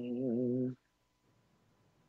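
A man humming one held low note with a slight waver, which stops under a second in.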